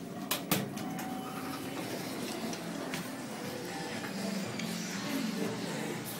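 Two sharp clicks of an elevator car-panel button being pressed, then the elevator car running and its doors sliding open, with background music mixed in.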